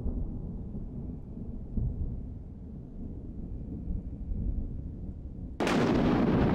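A low rumble that swells and dips, then a sudden loud boom a little before the end that dies away slowly.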